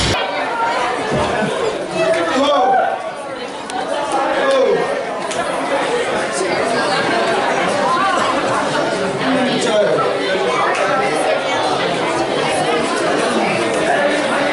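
Audience chatter: many people talking at once in a large hall, a steady murmur of overlapping voices.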